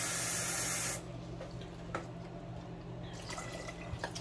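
Kitchen faucet running into a plastic measuring cup at the sink, shut off abruptly about a second in. A few faint knocks follow.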